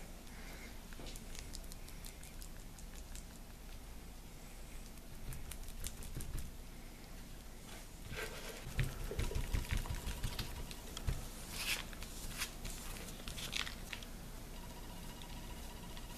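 Quiet handling sounds of wet plaster being worked by a gloved hand on a mold: scattered faint clicks and soft thumps, busiest from about eight to eleven seconds in.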